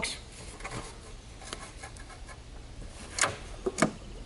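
Lid of a roof-mounted aluminium box on stainless steel hinges being shut: a few faint clicks, then two sharp knocks close together near the end as it closes.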